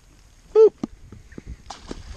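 A man's short, loud "woo" whoop, followed by a handful of sharp light clicks and knocks.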